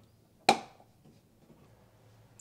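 Frigidaire dishwasher being shut after loading detergent: a single sharp click about half a second in.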